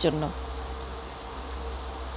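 A steady buzzing hum with one constant tone running through it and no change in pitch, after a single spoken word at the start.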